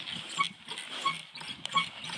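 Outdoor fitness machine's metal pivots squeaking in rhythm as it is worked, three short squeaks about two-thirds of a second apart.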